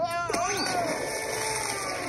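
A cartoon character's wavering yell of "Ah!" as he falls, then a splash into water and a steady rush of churning water.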